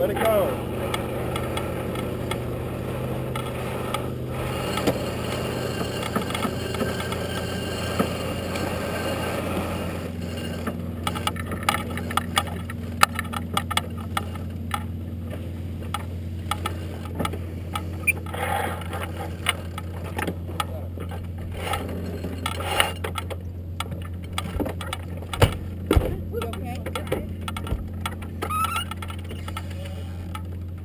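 A racing sailboat underway: a steady low rumble of wind and water on the boat and camera, with indistinct crew voices. From about ten seconds in there are many scattered clicks and knocks of deck gear being handled.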